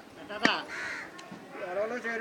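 A single sharp chop of a blade through raw chicken into a wooden chopping block, followed by a short, harsh, raspy call.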